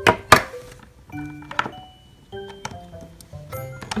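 Light background music of held notes, with two sharp knocks about a quarter second apart just after the start and a softer one about a second and a half in: hard plastic play-dough tools being set down on the tabletop.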